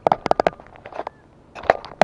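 A quick run of small clicks and ticks, then a few scattered ones and a single sharper click near the end.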